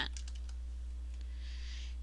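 A few faint computer keyboard keystrokes near the start, typing digits into a field, over a steady low electrical hum.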